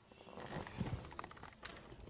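Faint, scattered small clicks and rustles of hands handling wiring and plastic interior trim in a car footwell.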